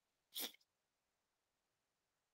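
A single short burst of breath noise from a person, lasting about a third of a second, on an otherwise near-silent line.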